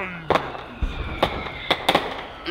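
Fireworks going off: about four sharp bangs spread over two seconds, with a deeper thud near the middle.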